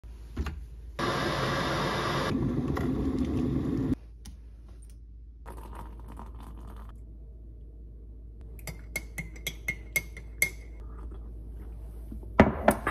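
De'Longhi electric kettle at the boil, a loud steady rush for about three seconds that cuts off abruptly, then hot water poured from it into a ceramic mug, followed by about seven quick ringing clinks of a spoon stirring in the mug.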